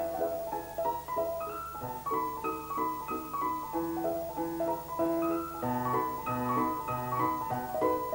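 Solo grand piano playing classical music: quick figures of short notes in the middle and upper range over held bass notes.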